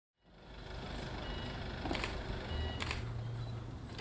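A van's engine idling with a steady low hum, with two sharp clicks about a second apart midway.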